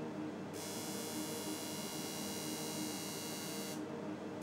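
A steady electronic buzz over a low hum. A brighter, higher buzzing layer comes in about half a second in and cuts off suddenly just before the end.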